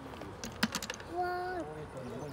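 A rapid run of about eight sharp clicks of hard objects knocking together, about half a second in, followed by a short held voice sound.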